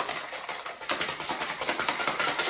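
Stainless steel cocktail shaker shaken vigorously, a rapid, even rattle of quick repeated strokes.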